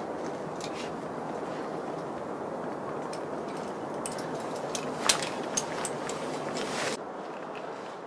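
Climbing hardware on a harness (carabiners and protection) clicking and clinking a few times as a climber moves, with the sharpest clink about five seconds in, over a steady background rush.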